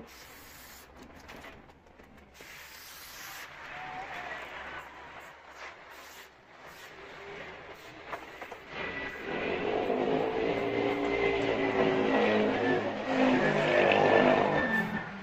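A motor vehicle engine passing close by, growing louder over the last five seconds with a wavering pitch and a thin steady whine above it. Earlier, quieter short hisses are heard, in keeping with repellent being sprayed on leather boots.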